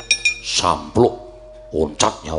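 A dalang's kepyak, the metal plates struck against the wayang puppet chest, clattering in a quick run of ringing clinks, with short vocal exclamations following.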